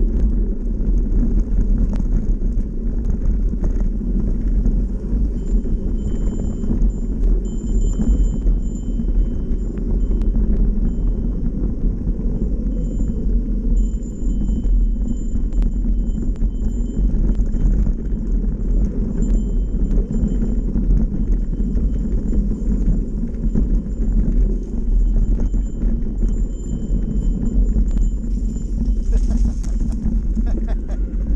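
Mountain bike with knobby tyres rolling over a rough dirt trail, heard from a camera mounted on the bike: a loud, continuous low rumble and rattle from the tyres and frame shaking over the ground. A faint high whine comes and goes above it.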